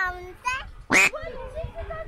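Speech, with one short, loud, high-pitched yelp about a second in, the sound of a person frightened while walking on a glass-floored bridge.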